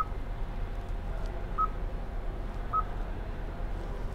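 Touchscreen infotainment unit of a 2019 Kia Cadenza giving three short electronic confirmation beeps as its screen is tapped, about one every second and a half, over a steady low cabin hum.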